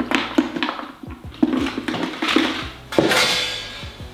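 Used derma rollers dropped into a plastic sharps bin, a run of small clattering knocks, with a louder rattle about three seconds in.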